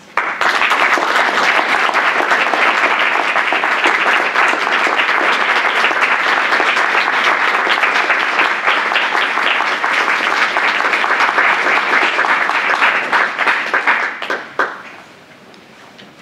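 Audience applauding. The applause starts sharply, holds steady, and dies away about fourteen seconds in, with a single sharp knock as it fades.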